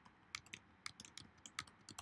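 Computer keyboard being typed on: a quick, uneven run of about a dozen faint key clicks.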